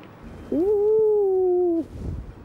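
A woman's long, drawn-out cry of joy: one sustained note that rises at the start, holds, sinks slightly and breaks off after about a second and a half.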